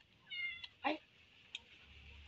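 A domestic cat meowing twice in quick succession, short high-pitched calls, with a couple of faint clicks between them.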